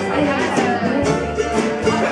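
Live acoustic string band playing a bluegrass-style song: strummed acoustic guitar, upright bass and mandolin over a drum kit keeping a steady beat.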